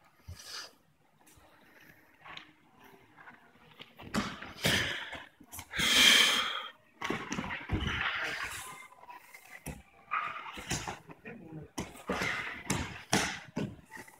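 Two grapplers wrestling on tatami mats: fairly quiet footwork at first, then from about four seconds in a run of thuds and scuffles as they go down and fight on the mat, with short voices calling out over it.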